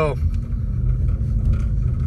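Car driving on a snow-covered road, heard from inside the cabin: a steady low rumble of engine and tyre noise with a faint hum.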